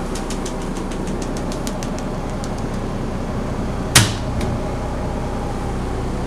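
Steady mechanical hum inside the motorhome, with a quick run of light ticks, about five a second, over the first few seconds and one sharp knock about four seconds in.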